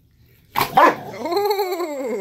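Cane Corsos scuffling, a female rounding on a male: a sudden loud bark about half a second in, then a long yelping cry that rises and falls in pitch.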